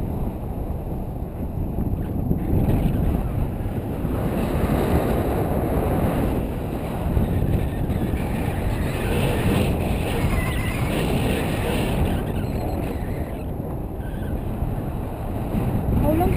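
Steady rumble of the airflow buffeting an action camera's microphone in a tandem paraglider's flight.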